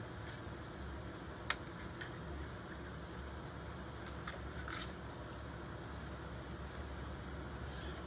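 Faint handling of plastic headband magnifier glasses and their clip-in lenses: a few light clicks, one sharper about a second and a half in, over a steady low hum.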